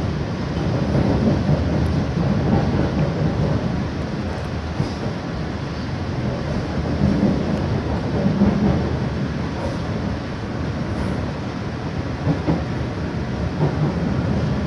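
Steady rumble of a moving passenger train heard from inside the carriage, its wheels running on the rails.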